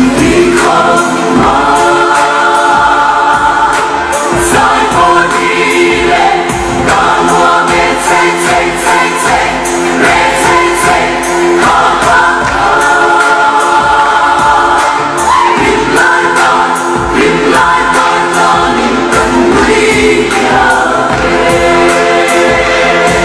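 Voices singing a Mizo dance song together in long held notes, over a steady beat.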